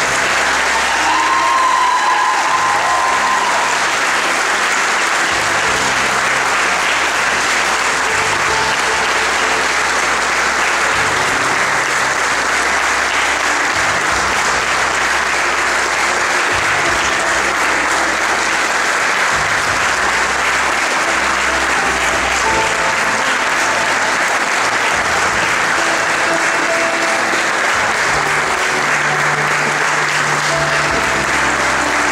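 Audience applauding steadily, with music playing underneath.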